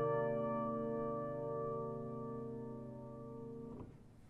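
The final chord of a grand piano, struck just before, rings on and slowly fades away, then is damped with a faint click near the end.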